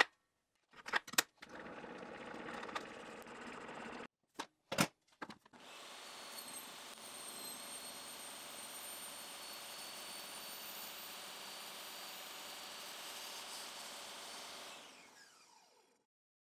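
DeWalt DW7491 table saw running with its 10-inch blade being raised up through a blank zero-clearance insert to cut the blade slot: a steady motor and blade whine that winds down near the end as the saw coasts to a stop. Several sharp clicks and a short burst of saw noise come in the first few seconds.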